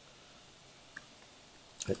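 Quiet room tone with a single faint computer mouse click about halfway through, the click that selects the installer file.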